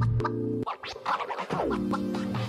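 Background music: an electronic track with choppy, stop-start sounds in its first second and a falling pitch sweep about one and a half seconds in.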